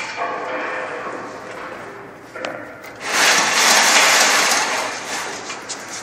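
A knock, then another about two and a half seconds in, followed by a loud, even rushing hiss lasting about two seconds.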